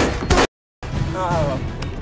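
Action-film soundtrack: a run of sharp bangs and hits over music for about half a second, then a sudden drop-out at a cut. The music comes back with a voice calling out.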